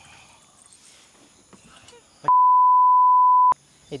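A steady, loud single-pitch censor bleep lasting a little over a second, starting a little past halfway and cutting off abruptly, with all other sound muted under it. Before it there is only faint background.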